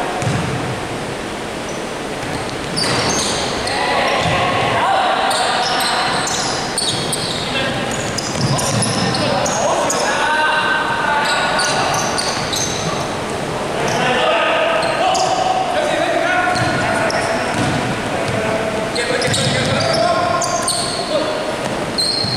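Basketball bouncing on a wooden court floor, with players' voices calling out, echoing in a large sports hall.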